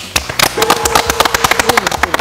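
A small group of people clapping: quick, uneven claps from a handful of hands rather than a crowd's roar.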